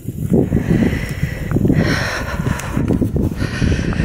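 Wind buffeting the camera's microphone: a loud, irregular low rumble with a brief rise in hiss about two seconds in.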